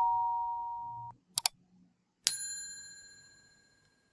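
Overlay sound effects: a two-note electronic chime fading out about a second in, two quick clicks, then a bright bell ding that rings and dies away over a second or so.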